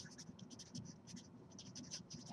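Felt-tip Sharpie marker scratching across paper as capital letters are written, a series of short, faint strokes one after another.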